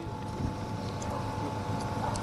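Steady outdoor background noise in a pause in the talk: a low rumble and hiss with a faint steady whine, and no distinct event.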